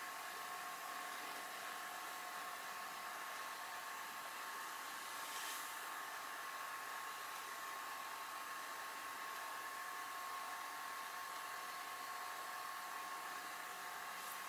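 Faint, steady whir of a motorised display turntable running, a low hiss with a thin steady whine, slightly swelling about halfway through.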